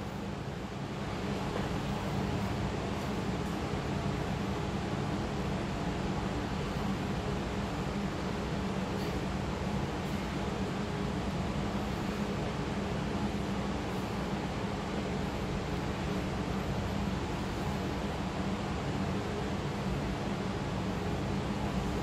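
Steady whir of an electric fan running, with a low hum underneath.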